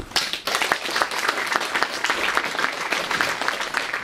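An audience applauding: many hands clapping together in a steady patter.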